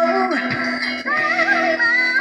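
A woman singing with a live band, amplified through PA speakers: a wavering sung melody over steady held backing notes, with a short break in the voice about halfway through before she sings on.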